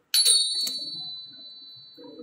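A small metal bell struck twice in quick succession, the first strike the loudest, ringing high and clear and fading over about a second and a half.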